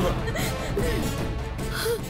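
Dramatic background music with a sustained low drone, with a brief gasp-like vocal sound over it.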